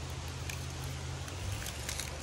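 Faint handling of a small magnetic geocache container against a metal barrier bracket, with light clicks about half a second in and just before the end, over a steady low rumble.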